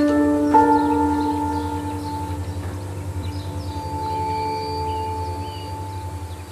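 Background music score: sustained bell-like tones, with a second set entering about half a second in, ringing over a low pulsing drone and slowly fading away.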